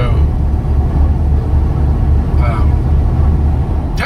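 Steady low drone of a moving vehicle heard from inside its cabin at highway speed: engine and tyre noise.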